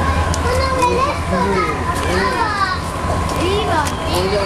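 Several children's voices chattering and calling over each other, with a steady low hum under them.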